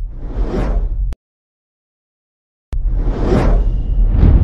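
Two whoosh sound effects with a deep bass rumble underneath. The first swells and cuts off sharply about a second in, and after a silence the second starts abruptly near the end.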